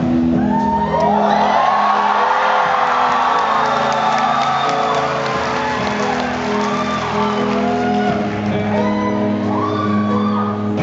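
A live indie rock band starts playing a slow song's opening, with held low notes, as audience members cheer and whoop over it.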